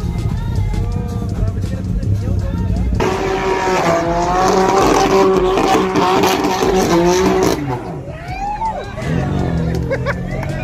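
A car's tyres squealing, with its engine revving, from about three seconds in until a little after seven, loud and wavering in pitch, over a steady low rumble.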